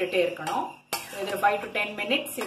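A spatula scraping and clinking against a stainless steel kadai as sliced brinjal, onion and tomato are stirred, with a sharp clink about a second in. A voice talks over it.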